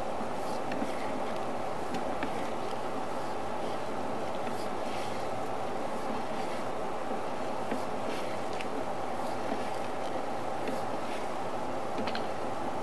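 Steady mechanical rumble and hiss with scattered faint clicks as a sewer inspection camera's push cable is fed down the line.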